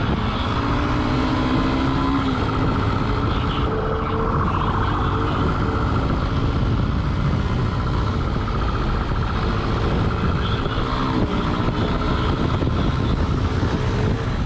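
Motorcycle engine running while being ridden along a street, with a steady rush of wind on the camera; the engine pitch climbs in the first two seconds as the bike accelerates, and again briefly near the end.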